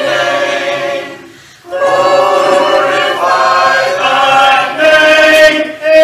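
A church congregation singing a hymn a cappella, many voices together on long held notes. The singing drops away briefly about a second in, then comes back in.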